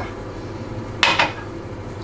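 A single short clink of kitchenware about a second in, over a steady low background hum.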